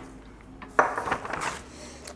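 Groceries being taken out of a paper grocery bag: a sudden rustle of paper with a few knocks of a plastic tub being handled, about a second in and lasting under a second.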